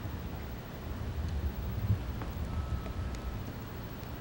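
Low steady background rumble of room noise, with a couple of faint clicks and a brief faint high tone midway.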